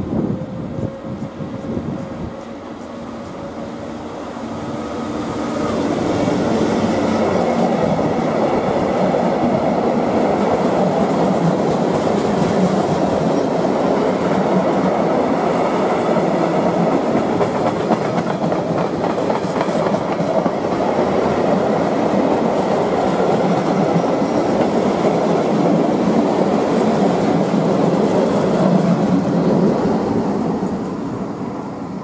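ÖBB class 1116 Taurus electric locomotive passing with a steady whine, followed from about six seconds in by a long freight train of stake and flat wagons rolling by, wheels clattering over the rail joints until the last wagon has passed.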